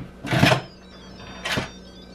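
Instant Pot pressure-cooker lid being set on and turned to lock: a short scraping knock about half a second in, then a shorter click about a second later.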